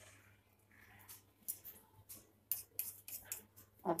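Faint short clicks and light scrapes of fingers working a thin, soft strip of rolled besan dough loose from a board, scattered through the second half.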